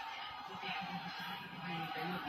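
Television sound from a fight broadcast, faint music and a voice, over a steady high-pitched hum.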